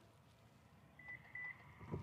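Two short electronic beeps of the same pitch, about a second in and a third of a second apart: a Subaru Outback's power liftgate warning beeper as the hatch is closed from the key fob. Otherwise near silence.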